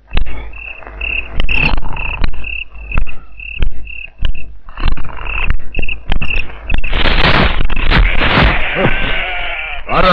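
Goats bleating, loudest from about seven seconds in, over a steady, repeating high chirping of night insects, with scattered sharp knocks.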